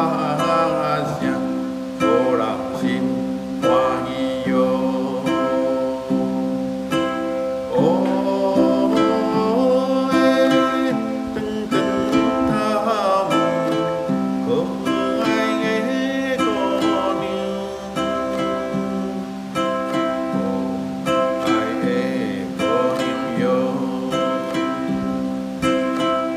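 Ukulele strummed in a steady rhythm, a simple chord accompaniment in the key of C, with a voice singing along at times.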